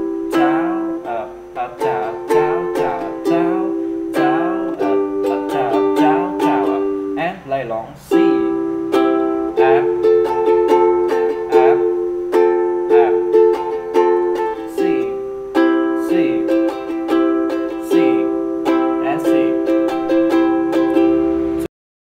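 Ukulele strummed in a steady down-up rhythm, moving between C and F chords. The playing cuts off abruptly near the end.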